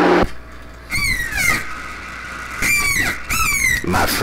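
CB radio receiver audio between transmissions: the voice cuts off just after the start, leaving static hiss, then three short bursts of warbling, gliding squeal tones: about a second in, near three seconds, and just before the end.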